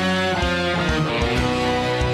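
Tagima TG-530 electric guitar, through a BOSS GT-8 multi-effects unit, playing a forró melody over a backing track with bass and a steady low drum beat.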